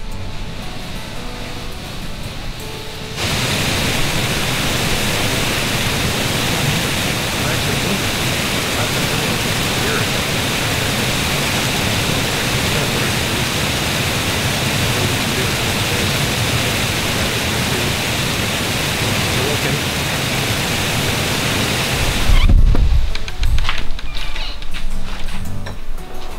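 Waterfall spilling over a low dam, a loud, steady rush of water. It starts suddenly a few seconds in and cuts off abruptly a few seconds before the end.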